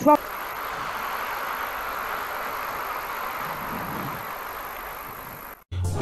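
Audience applauding, a steady even clapping that cuts off suddenly near the end.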